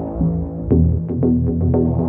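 Background electronic music: sustained synthesizer chords over a deep bass, with a beat of short ticks coming in under a second in, about four a second.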